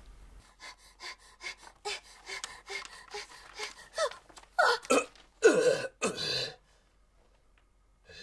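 A run of quick, breathy gasps from a voice actor, then several louder startled cries with falling pitch about four to six seconds in, performed during dubbing.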